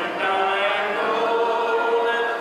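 A group of voices singing a slow hymn in long held notes.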